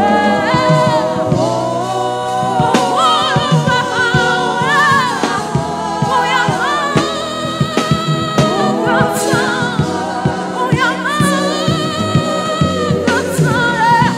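Live gospel singing by a church praise team: a woman's lead voice with backing singers, sung into microphones.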